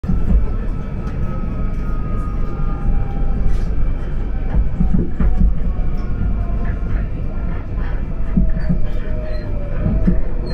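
Class 458 electric multiple unit heard from inside the passenger saloon: a steady low rumble of wheels on rail with scattered knocks. A faint whine falls slowly in pitch as the train slows on its approach to a station.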